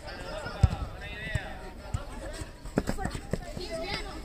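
Voices shouting during a youth football match, broken by several sharp thuds. The loudest thud comes about half a second in.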